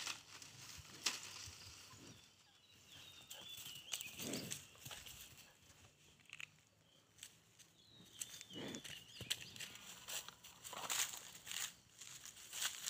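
Footsteps and rustling on dry straw, with a faint, high, wavering call twice in the background.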